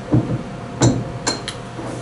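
A small metal lathe bed assembly being set down and handled on a wooden tabletop: a dull knock just after the start, then three short, sharp metal clinks between about one and one and a half seconds in.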